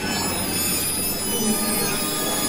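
Electroacoustic music made from beluga whale recordings: many high, steady whistling tones layered together over a low, even hum.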